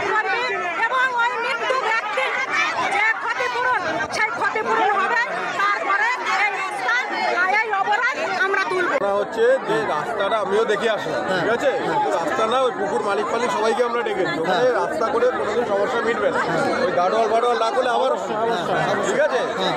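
Several voices talking at once, one person's speech over the chatter of a crowd.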